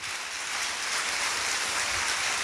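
A large congregation applauding: steady clapping from many hands.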